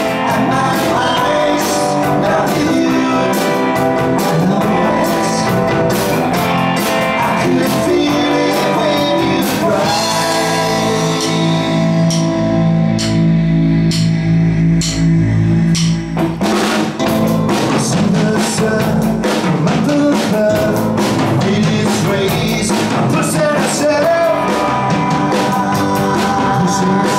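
A rock band playing live, with electric guitar, drum kit and male lead vocals. About ten seconds in, the band drops to held low chords and sparse drum hits. Some six seconds later it comes back in at full strength.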